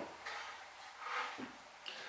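Quiet room tone with faint handling sounds of a pine board being shifted on a wooden workbench, and a soft knock or tick just before the end.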